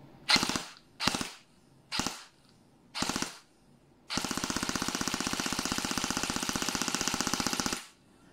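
G&G ARP9 2.0 airsoft electric gun (AEG) firing on full auto, its gearbox cycling rapidly. It fires four short bursts about a second apart, then one long burst of nearly four seconds.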